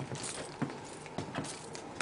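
Faint scattered light clicks and rustles over a low steady hiss.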